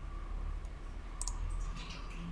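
A computer mouse button clicking once, a short sharp click about a second in, over faint steady room hum.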